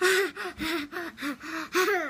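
A young child's high-pitched, breathy laughter: a quick run of about eight short laughs in a row.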